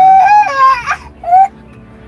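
A young child's high-pitched crying cry, wavering in pitch for about a second, then a second short cry.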